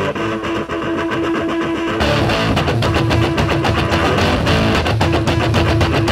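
A garage punk song begins with electric guitar, and about two seconds in the full band comes in with drums and bass.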